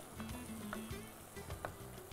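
Quiet background music over faint sizzling of bitter gourd and onion frying in a clay kadai, with two light ticks of the spoon against the pot.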